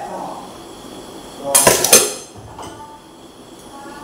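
Metal cooking pots clattering against each other as they are washed, with one loud clanging burst about one and a half seconds in that rings briefly.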